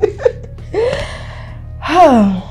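A young woman's breathy gasp, then a long sigh falling in pitch near the end, over soft background music.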